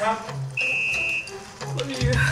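A single steady high electronic beep, about two-thirds of a second long, a game-show signal marking the start of a round, over background music.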